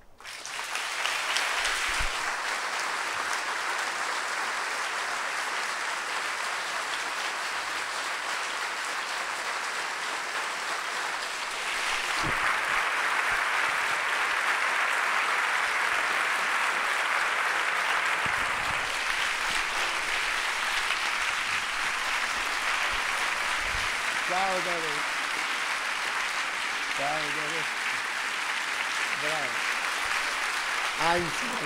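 Audience applauding steadily, the clapping growing louder about twelve seconds in.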